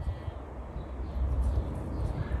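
Quiet outdoor ambience: a low, steady rumble with nothing else standing out.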